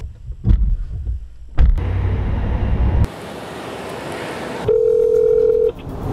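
Thuds of a car door as someone gets in and shuts it, a low rumble for about a second and a half, then a single steady telephone ringing tone of about a second, heard through the car's hands-free phone as a call is placed.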